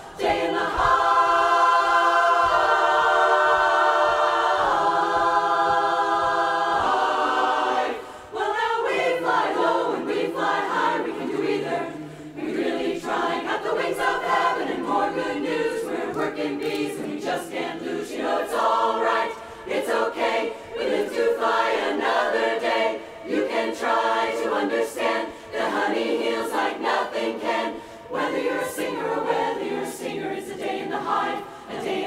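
Women's barbershop chorus singing a cappella in close harmony. Long held chords for about the first eight seconds, then after a brief break, quicker rhythmic singing.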